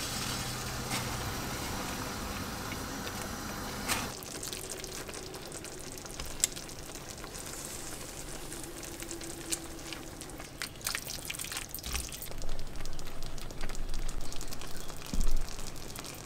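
Pot of water boiling on a gas stove, a steady bubbling hiss. About four seconds in it drops quieter, and scattered clicks and clinks of cookware come more often near the end.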